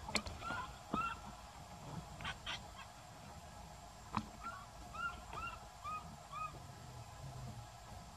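Baby macaque calling in short, high, arched cries: two in the first second, then a run of five or six about every half second from about four and a half seconds in. A few sharp clicks fall between the calls.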